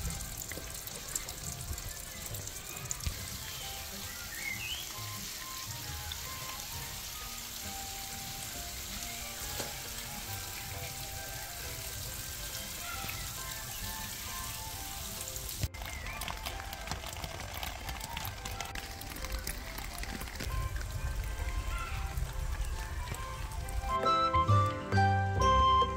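Water dripping and trickling down a wet, moss-covered rock face, a steady hiss of small drops.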